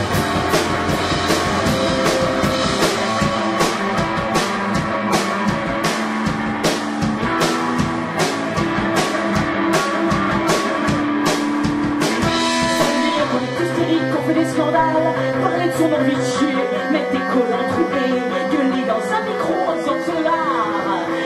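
Live rock band playing: electric guitar and a drum kit with a steady beat of cymbal strokes. About two-thirds of the way through, the cymbal beat drops out and sustained guitar and bass notes carry on.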